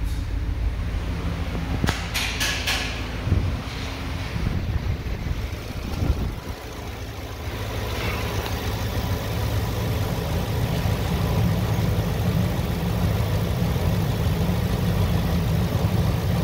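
Ford F-350's 6.2-litre gasoline V8 idling steadily. A few sharp clicks and a couple of thumps come in the first seconds. After that the engine is heard louder and closer, as from the open engine bay.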